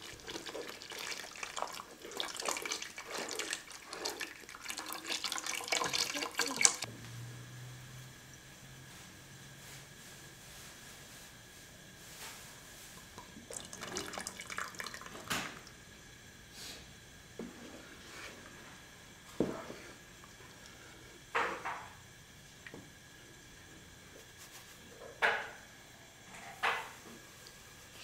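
Chicken broth poured from a carton into a pot of hot sauce, with a steady splashing that stops suddenly about seven seconds in. After that it is quieter, with a few scattered light knocks and clinks.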